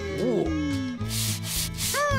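Cartoon sound effects over children's background music: a long falling tone in the first second, then three short spray hisses like an aerosol whipped-cream can.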